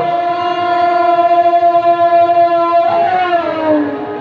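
A conch shell (shankha) blown in one long steady note that drops in pitch near the end as the breath runs out.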